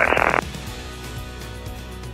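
A radio voice through the headset audio ends on its last word, thin and band-limited. Then a steady, low drone of the Beechcraft Bonanza's piston engine in the cabin, with faint sustained tones over it.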